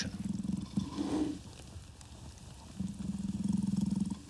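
A deep, rumbling growl, ape-like, made in the throat, in two stretches: one through the first second and a longer, louder one near the end.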